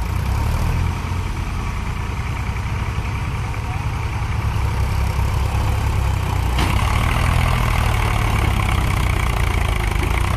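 HMT 3522 tractor's diesel engine running hard under heavy load as it drags a fully loaded trolley out of soft field ground, front wheels lifting. The steady low drone gets a little louder about two-thirds of the way through, with a brief click at that point.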